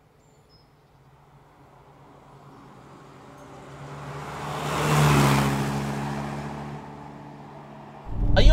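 A Carver One three-wheeler with a 660cc Daihatsu engine driving past: its engine and road noise grow steadily from faint, peak as it passes about five seconds in, then fade away.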